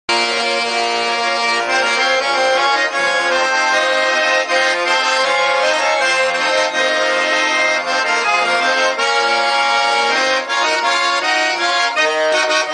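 Russian garmon (button accordion) playing an instrumental introduction: sustained reedy chords with a melody over them, the bellows keeping the sound continuous.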